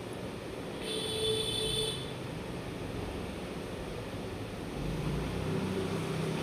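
Steady background noise, with a brief steady pitched tone lasting about a second, starting about a second in.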